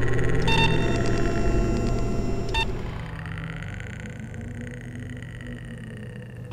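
Synthesized sci-fi soundscape: a steady low electronic hum under held tones, with short electronic beeps about half a second in and again around two and a half seconds, fading down after about three seconds.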